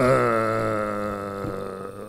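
A man's voice holding one long, level-pitched hesitation vowel, an "ehhh", for about two seconds as it slowly fades. It is a filled pause while he gathers his next words.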